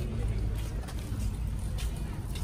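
Outdoor street background: a steady low rumble of road vehicles, with a few light knocks.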